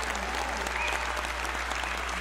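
Audience applauding, with a few voices calling out and whooping over the clapping.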